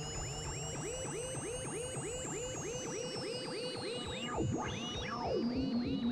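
Ambient electronic music played live on analog synthesizers run by a step sequencer, with reverb and delay. A fast, even run of short blips, each dropping in pitch, plays under two high tones that slowly rise and then fall. About four seconds in, several tones glide steeply down and a low pulse comes forward.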